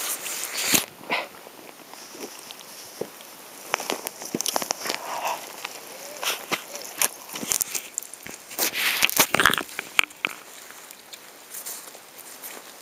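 Someone biting into and chewing an egg-and-ham sandwich close to the microphone, amid irregular clicks, crackles and rustles from the camera being handled.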